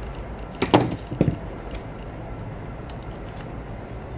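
A few clicks and knocks from handling the opened plastic casing of a Xiaomi handheld air pump and a tool against it, the loudest less than a second in and another soon after, then a few faint ticks.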